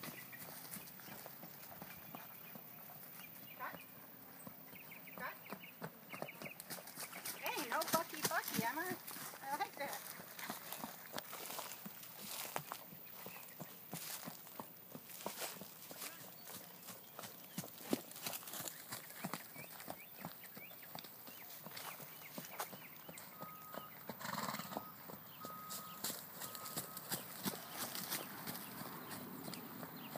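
Hoofbeats of a paint horse trotting on packed dirt on a lunge line: a steady run of irregular hoof strikes.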